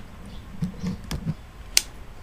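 A few soft knocks, then one sharp click near the end.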